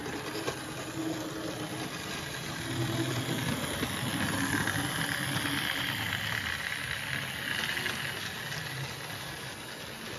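Model railway prairie tank locomotive 4589 running along the track with a coach train, its electric motor whirring over a steady hiss of wheels on rail. The sound grows louder as the train passes close by in the middle, then fades a little.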